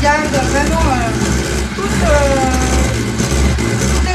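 Electric hand mixer running steadily at speed, its beaters whipping egg whites to firm peaks in a metal bowl. A voice, humming or talking without clear words, carries over the motor.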